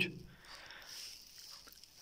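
A quiet pause with faint, even background noise, just after a man's voice trails off at the start.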